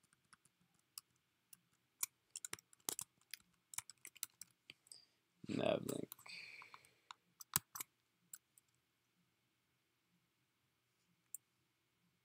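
Computer keyboard typing: irregular key clicks, bunched in quick runs before the middle and sparse near the end. About five and a half seconds in there is a brief, louder voice sound without words, followed by a softer breathy trail.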